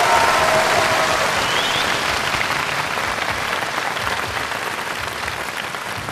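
Large audience applauding steadily, the clapping loudest at first and slowly dying down.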